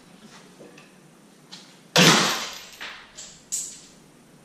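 Chain and hook rig on an engine hoist lifting a diesel cylinder head: a loud, sudden metallic clang about halfway through that rings out for about a second, then two smaller clanks.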